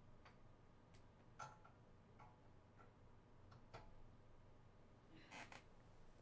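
Near silence: room tone with a few faint, scattered clicks and a short breathy rustle about five seconds in.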